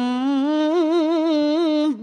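A child's voice reciting the Quran in melodic tilawah style, holding one long, ornamented note whose pitch wavers up and down, with a brief break near the end.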